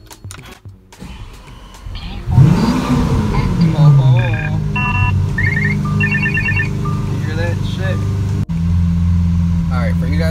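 Lamborghini Aventador's 6.5-litre V12 starting from the push-button: a loud flare of revs about two seconds in that rises and falls back to a steady idle. Short dashboard warning chimes ring over it a few times.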